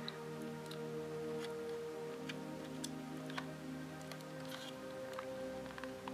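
Soft background music with long held tones, under a few faint, scattered plastic clicks as a small loose part is pressed into the plastic underframe of a model railway coach.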